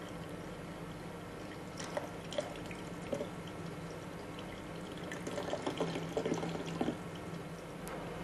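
Liquid splashing and dripping into a stainless steel sink, with scattered small knocks, a few about two seconds in and a busier run of them past the middle, over a steady faint hum.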